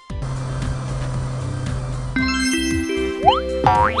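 Cartoon sound effects over children's background music: a steady low engine hum as a toy race car rolls into a parking space, then, from about two seconds in, musical notes and quick rising springy boing sweeps as the character jumps out of the car.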